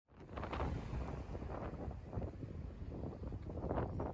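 Wind buffeting the microphone outdoors: an uneven low rumble that swells in gusts, strongest about half a second in and again near the end.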